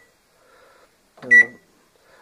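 Samsung MG23F302TAS microwave oven's control-panel beep: one short, high-pitched beep about a second and a half in as a button is pressed.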